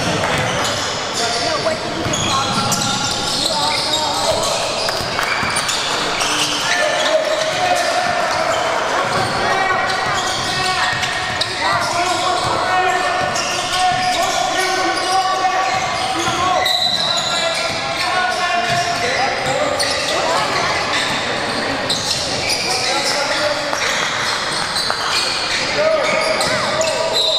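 Basketball game sounds in a large, echoing gym: the ball bouncing on the hardwood floor amid a steady mix of indistinct player and spectator voices.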